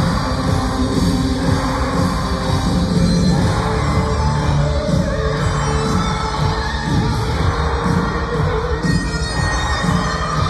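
A rock band playing live and loud through an arena sound system, with the hall's reverberation and crowd noise underneath.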